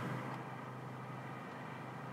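Faint, steady low hum of a Seat Ateca's cabin background noise, with no other sound standing out.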